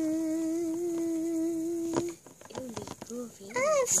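A child humming one long steady note with a slight waver, a pretend magic sound effect for the toy pony's horn. It stops with a click about two seconds in, followed by soft murmured voice sounds and a short sliding vocal sound near the end.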